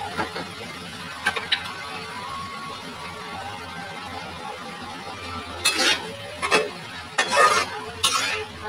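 A spatula scraping and knocking against a metal wok while food is stirred: a couple of strokes about a second in, then a run of louder scrapes over the last few seconds.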